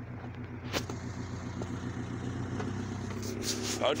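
Honda B16 DOHC VTEC inline-four in an Integra idling steadily, with a sharp click just under a second in.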